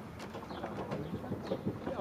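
A pigeon cooing, low-pitched, over outdoor background noise.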